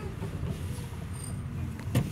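Car interior: low, steady rumble of the engine and running gear heard from inside the cabin as the car moves slowly while parking, with a click near the end.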